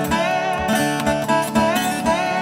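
Acoustic Weissenborn lap steel guitar played with a steel bar in a blues train song: a steady picked rhythm with notes sliding up and down under the bar.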